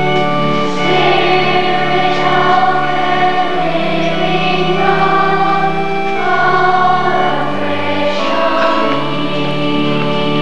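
A church choir singing a hymn in long held notes, with sustained low notes underneath.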